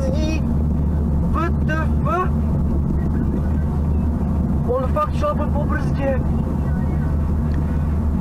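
Steady engine and tyre noise heard inside a car's cabin while driving at about 60 km/h, with a few brief bits of voice about 1.5 and 5 seconds in.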